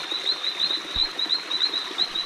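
Night-time chorus of small animals: short high rising chirps repeating about five times a second over a steady high whine. A single dull thump comes about a second in.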